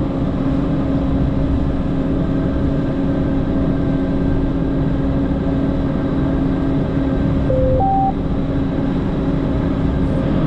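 PistenBully 600 winch snow groomer's diesel engine running steadily under load, heard from inside the cab, with a steady hum over the drone. About seven and a half seconds in, a short two-note electronic beep, low then high.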